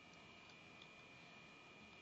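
Near silence: room tone with a faint steady high tone and a few very faint ticks.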